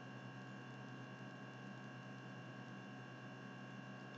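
Quiet room tone: a faint steady electrical hum made of several unchanging tones, with light hiss.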